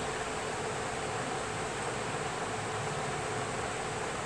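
Steady, even hiss of background noise with no distinct event: the noise floor of the narration recording.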